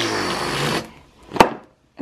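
Handheld stick blender running in a stainless steel bowl of banana and egg, its motor pitch falling, then cutting off just under a second in. A single sharp knock follows about half a second later.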